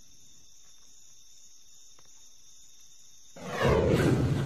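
Night insects, likely crickets, chirring as a faint, steady high-pitched drone. About three seconds in, a sudden loud, deep sound swells up and holds to the end.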